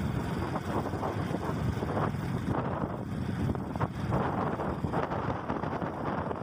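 Wind buffeting the microphone of a camera riding along a paved road, over the low, uneven road rumble of the vehicle carrying it.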